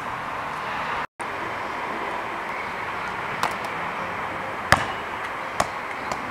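A basketball hitting a concrete outdoor court: three sharp knocks about a second apart, the middle one loudest, over steady outdoor background noise. The sound cuts out briefly about a second in.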